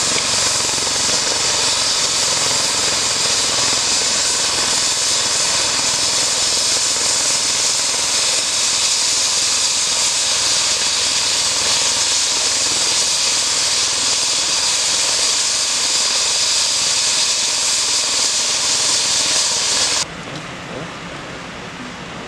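Airbus H135 trauma helicopter running on the ground, its turbines giving a loud, steady, high rushing whine that cuts off suddenly about two seconds before the end.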